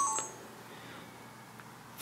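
Sony NEX-7 camera's electronic beep as movie recording starts: two quick tones, the second slightly lower, right at the start, then faint room tone.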